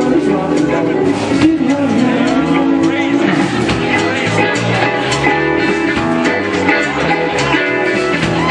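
A live country band playing an instrumental passage, with fiddle and electric guitars over the full band.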